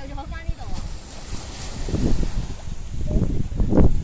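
Wind buffeting the microphone in gusts, strongest near the end, with a brief high-pitched voice at the start.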